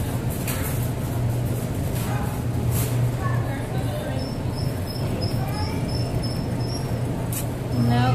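Arcade background sound: a steady low hum, faint background voices and game music, and a run of short, evenly spaced high electronic beeps midway through.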